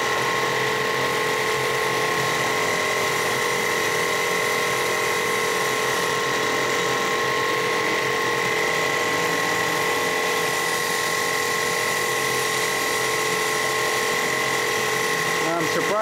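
Vincent CP-4 screw press running steadily with polymer feeding through it, its drive giving a constant whine of several steady tones over an even mechanical noise.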